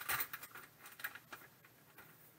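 Light plastic clicks and crinkles as a graded card slab is slid out of a plastic sleeve and set against other hard plastic slabs. The clicks come densely at first and thin out after about a second and a half.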